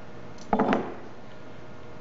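A high-frequency spindle motor set down on a wooden machine deck: a short clatter of two knocks about half a second in.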